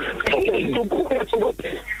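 Speech only: a man talking over a phone line, with the thin, narrow sound of a call.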